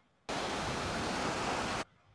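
About a second and a half of loud, even rushing sea noise from the soundtrack of a beach video playing over a screen share; it cuts in suddenly a moment in and cuts off abruptly before the end.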